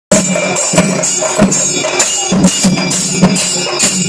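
Festival percussion: drums beaten together with jingling metal percussion in a steady rhythm, with a loud accented stroke every half second or so.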